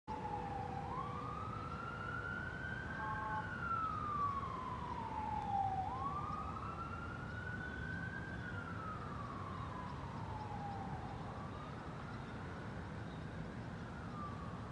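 Faraway emergency-vehicle siren wailing, its pitch slowly rising and falling about every five seconds, over a low steady rumble; it fades out near the end.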